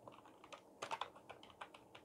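Faint, irregular keystrokes on a computer keyboard as a word is typed, with a few louder key presses a little under a second in.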